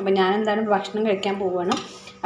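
A metal ladle stirring curry in a clay pot, scraping and clinking against the pot a few times, under a woman's voice that runs throughout.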